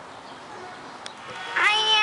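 Faint outdoor background, then about one and a half seconds in a young boy's high voice starts speaking, drawing out the word "I".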